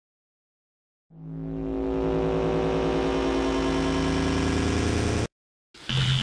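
An engine running at a steady pitch, fading in about a second in and cutting off abruptly near the end.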